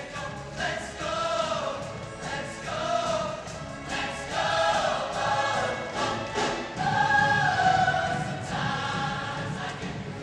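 Large mixed show choir singing in harmony as a full ensemble, with a long held chord about seven seconds in.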